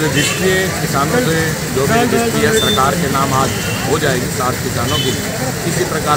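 A man speaking, with a steady low rumble of street traffic behind.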